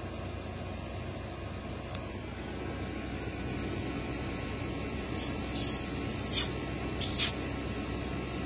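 Steady low background hum in a small room, with a few brief rustles and scrapes of a handheld phone being moved in the second half, the loudest just after seven seconds in.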